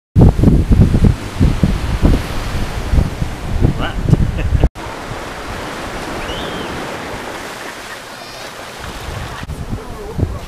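Wind buffeting the microphone in loud, uneven gusts; after a sudden cut a little under halfway through, a steady, quieter wash of surf with a couple of faint high chirps.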